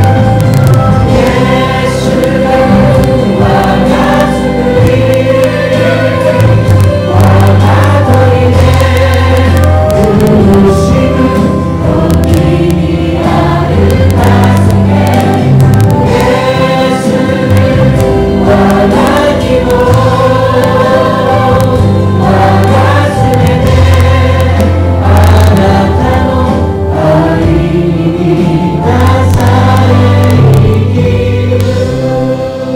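A Japanese worship song sung by a group of voices, led by a singer playing acoustic guitar, with a band holding sustained bass notes underneath.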